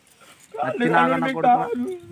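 A person's voice making a loud, drawn-out wordless cry with wavering pitch, starting about half a second in and lasting about a second and a half.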